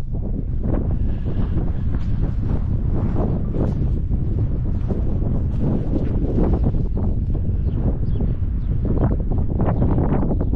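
Wind buffeting the microphone: a loud, steady low rumble with constant flutter.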